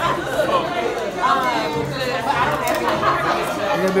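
Crowd chatter: many guests talking over each other at once, with no words clear.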